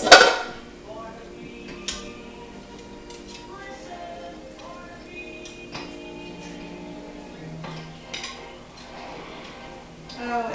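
A metal fork clinking and scraping against a baking dish while cornbread is cut out, with one sharp clink at the start and a couple of lighter taps later. Soft background music with held tones plays throughout.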